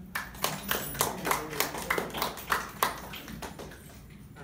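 A small audience clapping: a thin, uneven patter of individual hand claps that starts just after the violin stops and dies away near the end.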